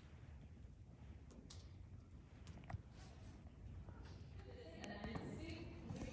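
Horse walking on sand arena footing: soft, scattered hoof steps over a low background rumble, with a faint voice starting about four and a half seconds in.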